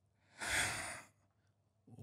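A man's breathy sigh, one unvoiced exhalation lasting just under a second, starting about a third of a second in.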